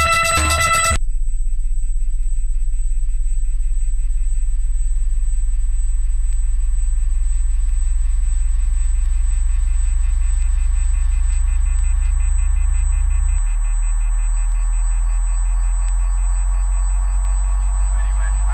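A loud, steady, low electronic drone from the soundtrack, with a faint high whine above it. It starts when guitar music cuts off about a second in and thins slightly about two-thirds of the way through.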